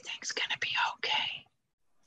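A woman whispering words of prayer, stopping about a second and a half in.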